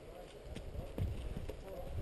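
A horse's hooves thudding on a soft dirt trail as it walks past, a few separate footfalls about a second in and near the end.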